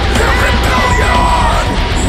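Folk metal band playing live, loud and full, with a melodic line over the band and yelled vocals.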